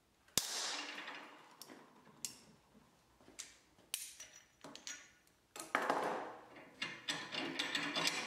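A hardened steel strip clamped in a bench vise snaps under a bend from locking pliers about half a second in. The snap is a single sharp crack with a ringing tail, the brittle break that shows the steel took the hardening. Metal clinks and clatters follow as the broken piece, the pliers and the vise are handled, busiest near the end.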